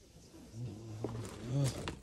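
A man's low voice making drawn-out, wordless sounds, with a couple of sharp clicks in the second half.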